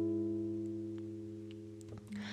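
A strummed chord on a nylon-string classical guitar ringing out and slowly fading away.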